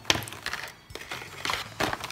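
Plastic chalk markers handled on a tabletop: a sharp click just after the start, then a few softer clicks and scrapes as a marker is set down and another picked up and uncapped.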